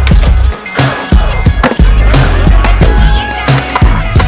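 Skateboard sounds of wheels, trucks and deck clacking and grinding on concrete ledges, with sharp impacts from pops and landings, under music with a heavy bass beat.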